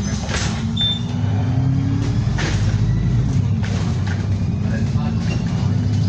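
Diesel bus heard from inside while driving: the engine note rises, drops at a gear change about two seconds in, then climbs again near the end, over road noise and small cabin rattles.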